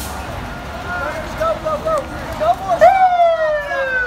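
Fire engine siren sounding a quick run of short rising-and-falling chirps, then a long tone sliding down in pitch near the end, as the apparatus moves off on a call.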